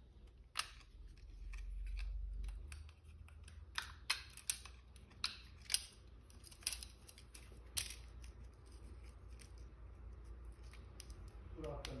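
Small sharp plastic clicks and taps, about eight spread over several seconds, as a Samsung Galaxy A02s's plastic board cover and frame are handled and pressed back into place with fingers and a small screwdriver during reassembly. A low handling rumble runs briefly early on.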